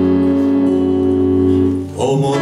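A live band holding one sustained chord, its notes ringing steadily, then dropping away briefly near the end.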